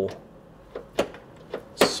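Quiet room tone with a few faint, short clicks, the sharpest about a second in, and a man's voice starting right at the end.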